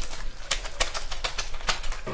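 A fast, uneven run of sharp clicks, about six or seven a second.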